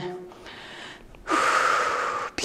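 A woman's loud, forceful breath lasting about a second, starting just past halfway, after a quieter stretch of faint breathing. It is the breath of exertion at the end of a dumbbell balance exercise.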